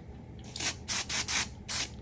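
WD-40 aerosol can sprayed onto a cloth in about five short hissing bursts, only a little.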